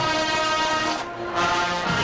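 Marching band brass holding loud sustained chords, with a short break about a second in before the next chord.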